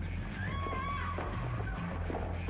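Film soundtrack music over a steady low hum, with a short high-pitched cry that rises, holds and falls, lasting under a second, starting about half a second in.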